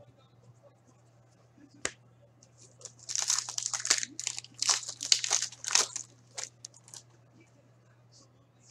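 A plastic hockey card pack wrapper being torn open and crinkled by hand: a single click just before two seconds in, then a run of crackling rustles for about four seconds.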